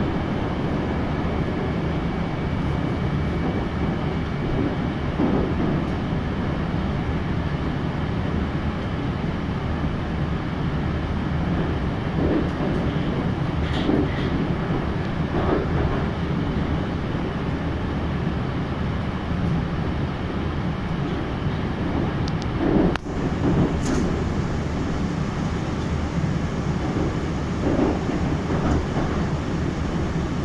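Moscow metro train running through the tunnel between stations, heard inside the car: a steady rumble of wheels on rail. A few brief knocks come through it, the sharpest about 23 seconds in.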